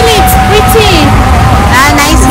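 A person's voice, with long held and gliding notes, over a steady low rumble.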